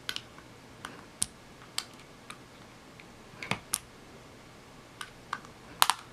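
About ten scattered light clicks and taps, the strongest near the end, from a screwdriver tip and fingers working at the small plastic camcorder case while prying off the rubber seals over its screw holes.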